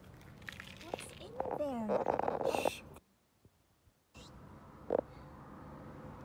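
A person's wordless vocal sounds with pitch sliding downward and wavering, loudest about two seconds in. The sound then drops out for about a second, and a single short, sharp noise follows.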